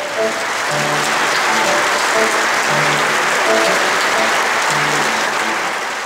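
Audience applauding at the end of an operetta song, over the band's instrumental accompaniment playing on in a short repeating figure, with a low note about every two seconds.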